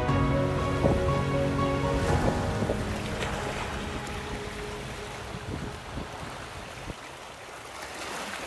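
Background music ending about two to three seconds in, leaving a steady wash of sea waves and wind that slowly grows quieter.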